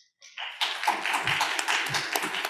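Audience applauding, starting about half a second in and carrying on steadily.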